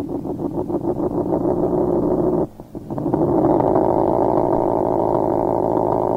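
Industrial noise music: a dense, loud drone with a fast flutter in its first couple of seconds, dropping out briefly about two and a half seconds in, then running on steady.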